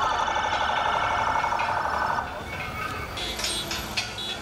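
A convoy vehicle's siren holding one steady tone for about two seconds, then cutting off, leaving vehicle noise.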